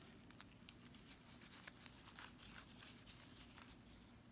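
Near silence with faint, scattered small clicks and rustles of grosgrain ribbon and a metal safety pin being handled as the pin is fastened.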